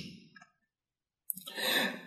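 A man's intake of breath between spoken phrases, preceded by a short stretch of dead silence and a single mouth click.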